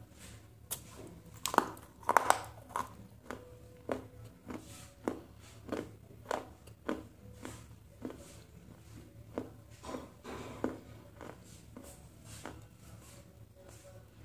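Close-miked crunchy chewing of a crisp fried snack shell. The loudest bites come about two seconds in, then crisp crunches follow at a steady pace of about one every half second, thinning out near the end.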